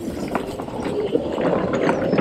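Electric Club Car golf cart driving past at speed: a steady whir of its motor and tyres with small scattered clicks, growing louder as it comes by.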